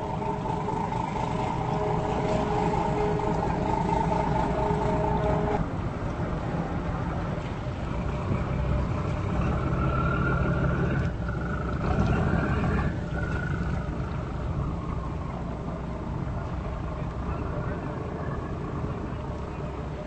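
Boat engine running steadily, with wind and water noise. A steady whine over it stops suddenly about five seconds in, and a higher whine rises briefly near the middle.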